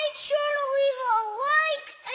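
A high-pitched, child-like voice in one sing-song phrase with sliding pitch, dipping quieter near the end.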